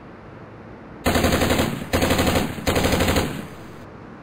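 Machine-gun sound effect: three loud bursts of rapid fire in quick succession, starting about a second in, over the steady hiss of surf.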